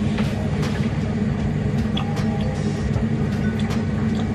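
Kitchen extractor hood fan running with a steady low hum, with a few faint clicks over it.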